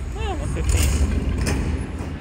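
Lock It Link Superlock slot machine sounds as the game moves from the wheel feature back to the reels: a short swooping pitched tone near the start, then a low rumbling whoosh that peaks about a second in and fades by the end.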